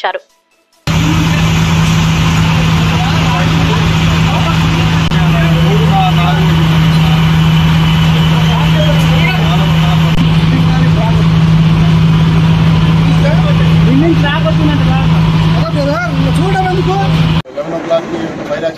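Fire tender's engine and pump running with a steady hum while a hose jet rushes, with many people calling and shouting over it. It cuts in about a second in and stops abruptly just before the end.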